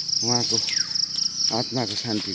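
A steady, high-pitched chorus of insects, droning without a break.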